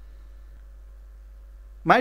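A pause in a man's speech, filled only by a steady low hum; he starts speaking again near the end.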